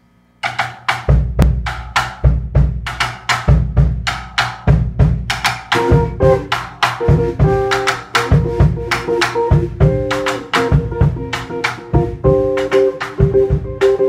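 Drum kit starts the tune alone about half a second in, with bass drum, snare and cymbal strokes in a steady groove. About six seconds in, the band's guitars and bass join with held pitched notes over the drums.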